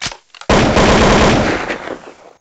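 A burst of rapid automatic gunfire. A few separate cracks come first, then a loud, dense burst of fire lasting just over a second, fading away near the end.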